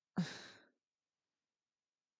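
A man's short breathy exhale, a sigh or huff of laughter: a brief voiced start falling in pitch, then breath noise that fades out within about half a second.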